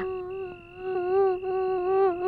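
Background film score: a long held note, level in pitch with a slight waver and a humming quality, broken briefly once or twice.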